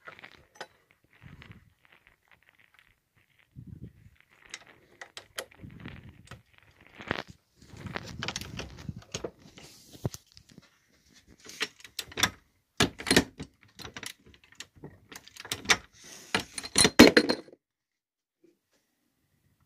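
Irregular metallic clicks, clinks and rattles of brass .30-06 rifle cartridges and reloading-press parts being handled, with a few duller knocks. The clicks come thicker and louder in the last few seconds.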